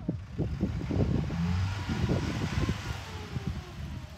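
A motor vehicle passing, its noise swelling about a second in and fading again near the end, over low knocks and rumble from the handheld microphone.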